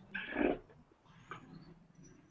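A short, breathy chuckle heard over a video-call microphone, lasting about half a second just after the start, with a fainter second breath or sound a little past the middle.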